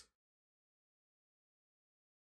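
Near silence: the sound drops out to nothing, with only the end of a spoken word in the first instant.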